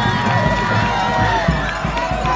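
Football stadium crowd cheering and shouting after a touchdown, many voices overlapping, with a long held high note over the din.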